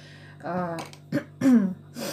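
A woman's voice making two short wordless vocal sounds, the second falling in pitch, like hesitation noises or a throat clearing between words.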